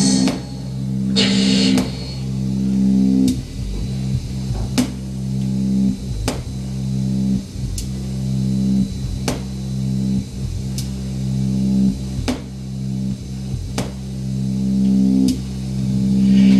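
Live electronic music: a sustained low synthesizer drone, swelling and falling back with a sharp click about every second and a half.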